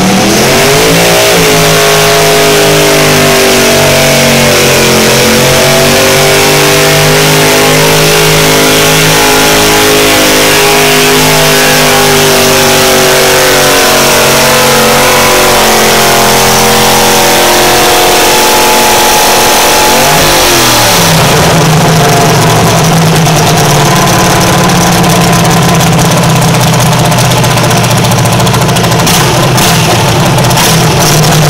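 Garden tractor engine running loud at high throttle under load as it pulls a weight-transfer sled, its pitch wavering and sagging. About two-thirds of the way through the pitch dips sharply and the engine settles into a steadier, lower running.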